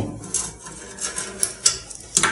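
A screwdriver clicking and scraping against the edge of a washing machine tub as it prises out a rubber seal pinched under the tub's lid: several short, irregular knocks and scrapes.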